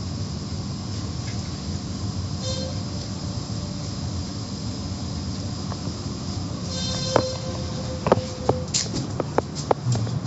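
Automatic car wash machinery running, heard from inside the car's cabin: a steady low rumble with a hiss of water spray. In the last three seconds, several sharp knocks and clicks break in.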